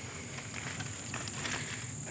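Crickets chirping in a steady high-pitched chorus, with faint patter of footsteps in dry leaf litter.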